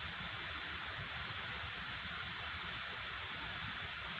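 Steady background hiss with a low rumble underneath, even throughout, with no distinct sounds in it.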